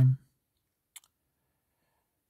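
A man's voice ending a word, then a pause broken by a single short, faint click about a second in.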